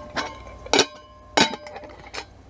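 Thin titanium camping cookware clinking as the pieces are handled and fitted together: three light metal knocks about half a second apart, each leaving a short ringing tone.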